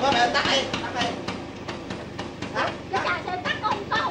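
Vintage Vespa scooter engine running with a rough, uneven clatter while the men try to switch it off, with indistinct voices over it.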